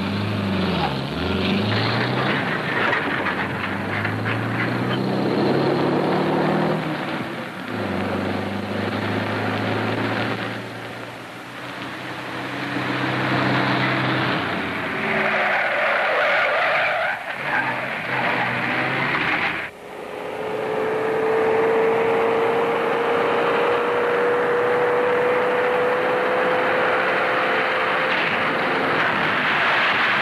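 An old open touring car's engine revving up and down as it speeds along, then tyres skidding. After a sudden break about two-thirds in, the car noise and skidding go on under a thin, slowly rising whine.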